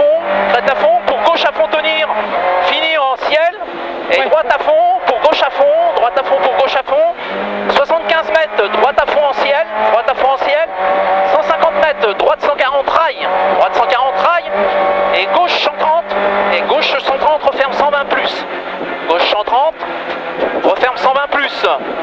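Renault Clio Ragnotti N3 rally car's four-cylinder engine heard from inside the cabin, driven flat out, its revs rising and falling again and again. Frequent sharp knocks and rattles run through it.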